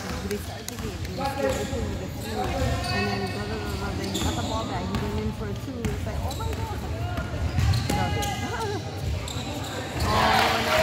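A basketball being dribbled on an indoor gym court, with repeated low thuds, under the talk and calls of players and spectators.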